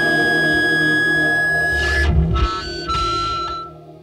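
The end of a loud rock song: the band's last chord rings out on electric guitars with a steady high tone held over it. About two seconds in, this breaks off into a few short closing notes, and the sound fades out near the end.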